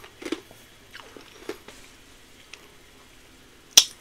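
Quiet room with a few faint mouth clicks and soft breaths, then one sharp click, a lip smack, near the end.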